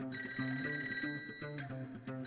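Cartoon smartphone ringing: an electronic ring that starts just after the opening, stops about a second and a half later and starts again at the very end, over soft background music.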